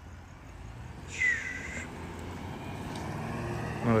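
A low, steady rumble of vehicles running on the street, growing slightly louder, with one short, harsh call about a second in.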